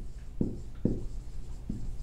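Dry-erase marker writing on a whiteboard: a series of short separate strokes as letters are written.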